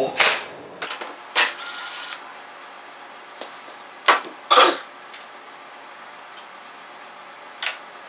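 Milwaukee Fuel 3/8-inch stubby cordless impact wrench run briefly, a short whirr of under a second, backing off the nut on a snowblower carburetor's float bowl. A few sharp clicks and knocks come from handling the tool and parts.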